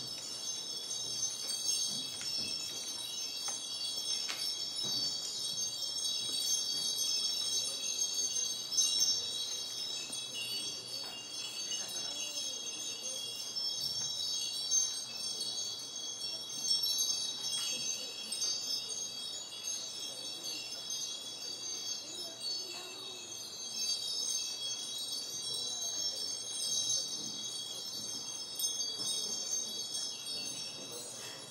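Wind chimes ringing on without a break in a dense cluster of high, shimmering tones.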